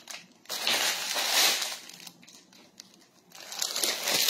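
Clear plastic packaging crinkling as it is handled, in two bursts: one starting about half a second in and lasting over a second, and another starting near the end.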